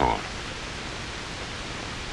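Steady hiss from an old 1940s film soundtrack, with no other sound in it, after a man's voice ends a word at the very start.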